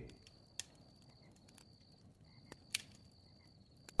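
Faint campfire crackling: a few sharp pops, the loudest about three quarters of the way through, with a faint high steady tone coming and going behind them.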